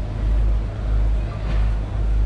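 Wind buffeting an outdoor camera microphone: a deep rumble that swells and dips, over a steady hiss.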